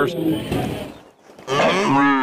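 A bovine moo, one long pitched call starting about one and a half seconds in and still going at the end.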